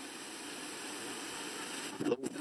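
A steady hiss of white noise that slowly grows louder.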